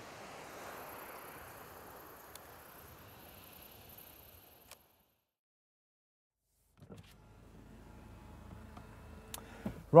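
Faint open-air ambience with a light click about two and a half seconds in and another just before the sound cuts to silence for about two seconds. Then the faint low hum of a car cabin, with a few light ticks.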